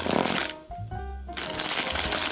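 White plastic postal mailer bag crinkling and rustling as it is handled and turned over in the hands, with a short lull about halfway through.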